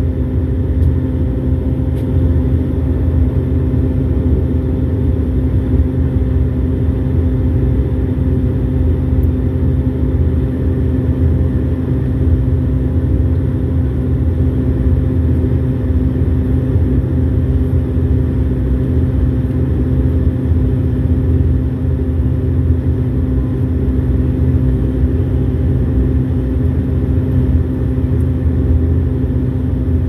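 Bombardier Dash 8-400's turboprop engines and propellers running steadily on the ground, heard from inside the passenger cabin as a loud, even drone with several steady tones.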